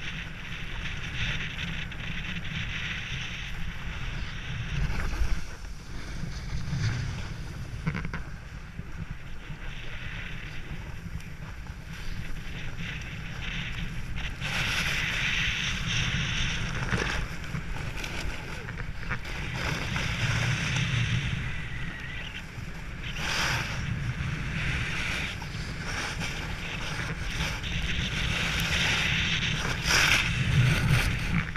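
Snow scraping and hissing under a board as it slides and carves down a groomed slope, swelling and fading with the turns, over a steady wind rumble on the camera's microphone.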